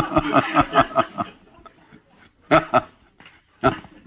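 Laughter: about a second of rapid chuckling, followed by two short laughs later on.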